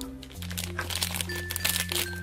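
A foil toy blind bag crinkling as hands squeeze and open it, over background music with held bass notes.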